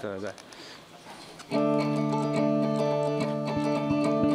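Electric guitar: a chord struck about one and a half seconds in and left to ring on steadily.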